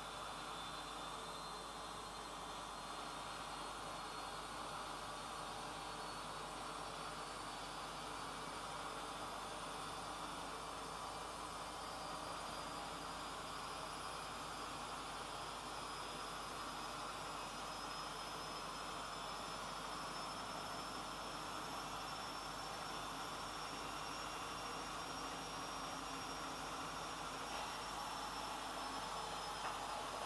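Steady low hiss of room tone with no distinct events, and a faint high whine that drifts slowly upward in pitch.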